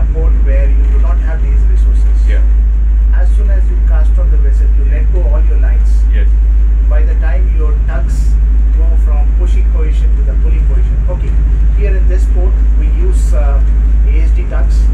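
A man talking over the loud, steady low drone of a boat's diesel engine heard inside its wheelhouse.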